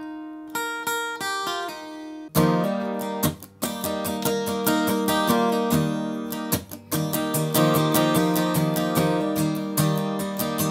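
Acoustic guitar capoed at the third fret, playing in the key of E flat: a few picked single notes ring for about two seconds. A sharp muted slash strum follows, then steady down-up chord strumming, broken twice by brief muted strokes.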